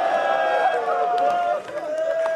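A zakir's voice through a microphone and loudspeakers, reciting in a drawn-out, chanted style with long held notes, broken by a short pause near the end.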